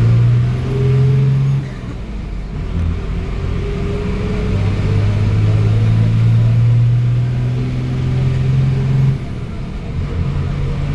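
Engine drone and road noise inside a moving vehicle: a steady low hum that dips in loudness about two seconds in and again near the end.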